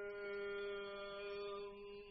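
A single voice holding one long, steady chanted note.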